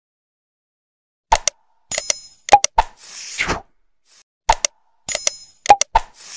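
Subscribe-button animation sound effects, starting about a second in: quick mouse clicks, a bell-like ding and a short whoosh. The sequence plays twice.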